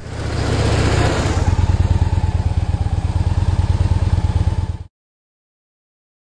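Motorcycle engine running with a rapid, low pulsing beat. It grows louder over the first second, then cuts off suddenly about five seconds in.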